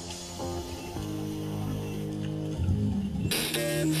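Background music: guitar notes over sustained low tones, with a louder, fuller electronic section coming in suddenly near the end.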